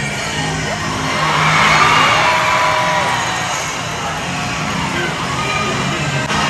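Dance music playing while a crowd cheers and whoops, the cheering swelling about two seconds in.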